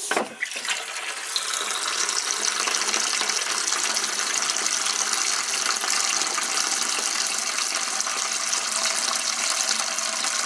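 Water pouring from a drain hose into a plastic bucket as the house's water lines are drained after the main is shut off. It starts suddenly and builds within the first second or so into a steady rush.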